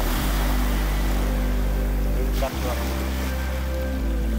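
Steady wash of surf on a beach at night, with a strong steady low rumble underneath.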